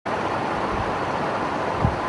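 Steady hiss of background room noise in a lecture hall, even and unchanging, with a soft low thump just before the end.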